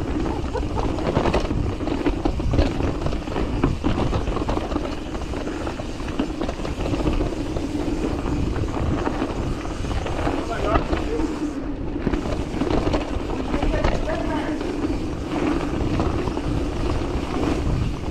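Mountain bike descending a dirt forest trail: steady rushing wind on the microphone and tyre noise on the dirt, with frequent short rattles and knocks from the bike over bumps and roots.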